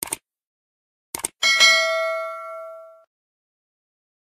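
Subscribe-button animation sound effect: a short mouse click, two quick clicks about a second in, then a bright bell ding with several tones that rings out and fades over about a second and a half.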